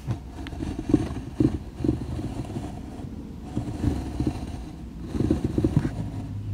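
Handling noise picked up by the built-in microphones of a Canon EOS Rebel SL2/200D: irregular low thumps and rubbing from hands moving and touching close to the camera on a car dashboard, with a cluster of thumps near the end.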